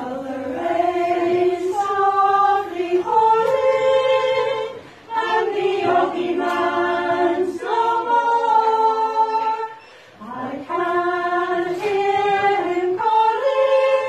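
Women's a cappella choir singing in harmony, several voices holding long notes together in phrased lines, with brief breaks for breath about five and ten seconds in.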